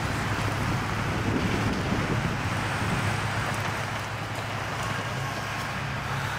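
Steady downtown street ambience: traffic running with wind noise on the microphone, under a constant low hum.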